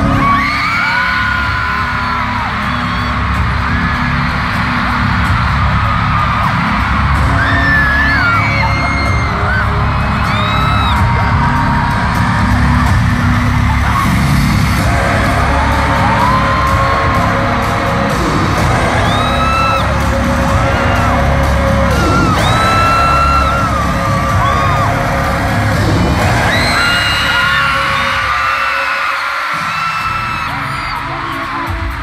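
Live K-pop concert heard from among the crowd: loud music with a heavy bass beat, opening with a sudden bang as stage pyrotechnic flames go up, and fans screaming high over it throughout. The bass drops out briefly near the end.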